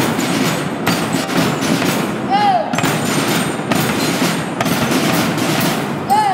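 School marching band percussion playing outdoors, with a bass drum and other drums hitting repeatedly over a dense, busy wash of sound. About halfway through, a short voice call rises and falls.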